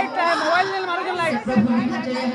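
A person speaking, with crowd chatter behind.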